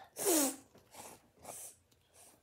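A child sneezing once, a short loud burst with a falling voiced 'choo', followed by two shorter, quieter sniffs.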